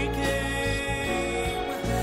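A male solo singer holds a long note in a slow song, accompanied by piano and orchestra.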